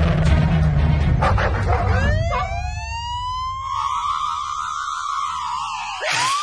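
Cartoon police-car siren on a small toy police car: after a low rumble, it winds up in pitch about two seconds in and then warbles rapidly around one high pitch.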